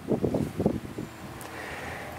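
Wind buffeting the microphone with irregular rustling during the first second, then a faint steady hiss.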